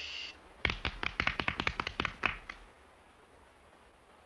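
A rapid, irregular run of sharp taps, about fifteen in two seconds, that then dies away.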